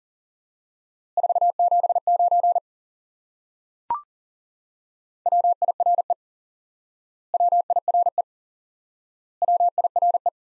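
Morse code sent at 40 words per minute as a keyed steady tone: "479" sent once, then a single short higher-pitched courtesy beep about four seconds in, then the next element, "wire", sent three times in shorter identical groups about two seconds apart.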